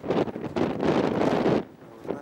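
Strong wind buffeting the microphone, a loud rumbling rush that dies away about a second and a half in.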